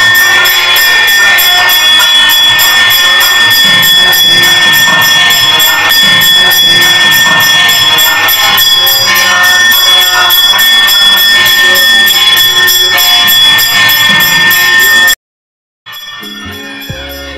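Temple bells ringing loudly, struck rapidly and steadily throughout, the clangour that accompanies the deeparadhana (lamp-waving arati) before the Ganesha shrine; it cuts off suddenly near the end.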